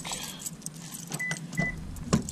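Car keys jangling in hand, with two short high beeps about a second and a half in as the car is unlocked by remote.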